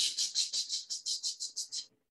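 A person imitating sanding back and forth: a quick run of rasping hisses, about six a second, fading out toward the end.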